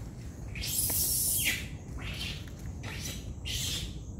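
Monkeys shrieking as they fight: one long, harsh, high-pitched shriek about a second in, the loudest, then three shorter shrieks.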